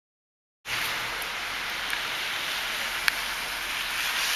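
Silence for about the first half second. Then a steady outdoor hiss of background noise starts suddenly, with one sharp click about three seconds in.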